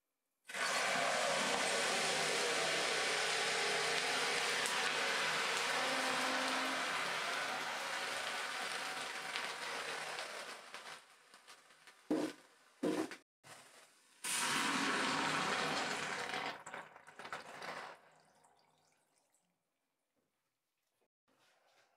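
Molten copper poured into a tube packed with wet water gel beads, sizzling and hissing loudly as the water flashes to steam around the metal. The sizzling holds steady for about ten seconds, dies down, flares up again for a couple of seconds, then fades away.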